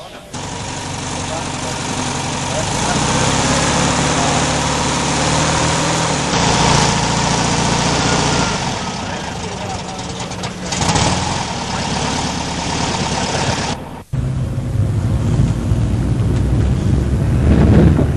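Car engines running, with voices in the background. The sound breaks off abruptly about fourteen seconds in and resumes at once.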